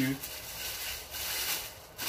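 Tissue paper rustling and crinkling as it is handled, a soft, uneven rustle that fills most of the two seconds.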